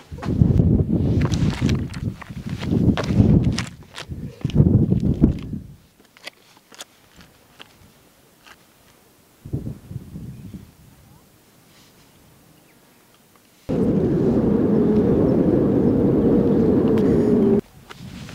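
Wind buffeting the microphone in uneven gusts for the first few seconds, then a quieter stretch with a few light clicks, then a steady rush of wind noise for about four seconds that cuts off suddenly near the end.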